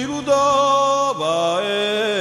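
Male voice singing a Corsican song in long held notes, stepping to a new pitch twice, over a sustained accompaniment.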